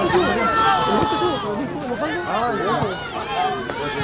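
Football spectators shouting and calling, many voices overlapping at once, with one drawn-out call about half a second in.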